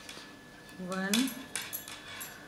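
Steel knitting needles clicking and scraping against each other as stitches are purled, with a sharp click a little past the first second. About a second in, a brief rising voice-like sound is heard.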